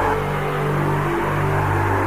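Electronic tekno music in a beatless stretch: low synth notes held steady under a hissing wash of noise, with no drum hits.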